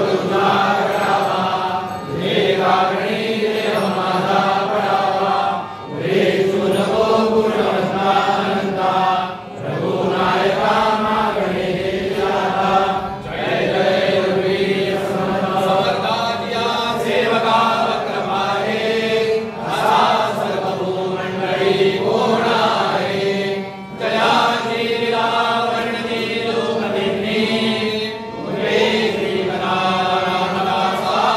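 Hindu devotional chanting by a group of voices in unison, in phrases of a few seconds each with short pauses for breath between them.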